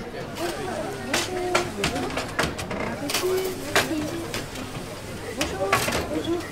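Indistinct chatter of many children's voices in a school canteen, with several sharp clatters of trays and dishes on a metal serving counter.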